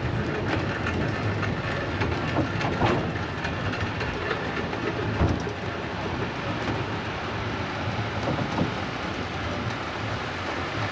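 Funicular car running on its rails, a steady rumble with irregular clicks and rattles from the wheels and track.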